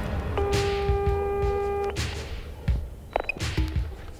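Instrumental music: a held pitched note lasting about a second and a half over irregular low thudding beats, with a short higher note later on.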